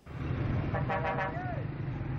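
Street traffic with motorcycle and car engines running as a steady low rumble. About a second in comes a short pitched call that falls away.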